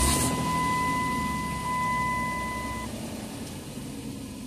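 A 2006 Dodge Grand Caravan's V6 engine starting by remote start, heard from inside the cabin: a brief crank right at the start, then the engine catches and runs, growing gradually quieter. A steady high-pitched tone sounds alongside and stops about three seconds in.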